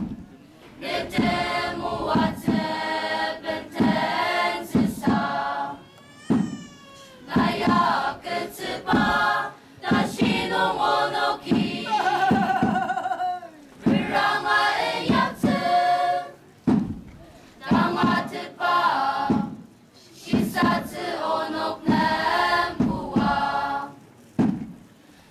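A choir singing together in short phrases with brief pauses between them.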